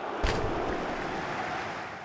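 Steady rushing noise with no tone in it, with a short click about a quarter of a second in.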